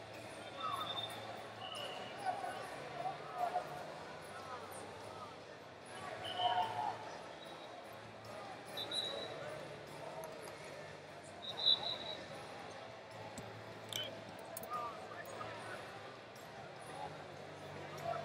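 Wrestling-arena ambience: a steady babble of distant voices and shouts, with scattered short, high squeaks of wrestling shoes on the mat.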